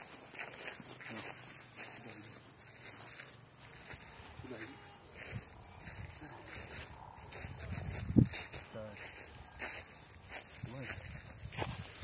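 Footsteps through grass and rustling of a handheld phone as it is carried along, under faint, intermittent voices, with one sharp knock about eight seconds in.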